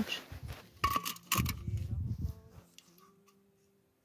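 A metal drinks can knocked and scraped against bare rock: a couple of sharp metallic clicks with a short ring about a second in, then a longer gritty scrape.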